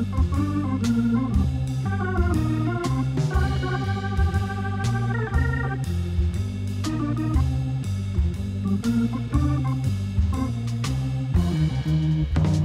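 Background music: a melody over a repeating bass line with a steady beat.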